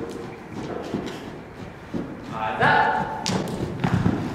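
Dull hoofbeats of a horse cantering on the soft dirt footing of an indoor arena, a series of muffled thuds, with a voice rising over them in the second half.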